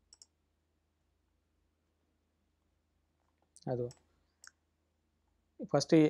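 A faint computer mouse click or two right at the start, as Xcode's Run button is pressed, then near silence. A brief spoken sound comes a few seconds in, and speech starts again near the end.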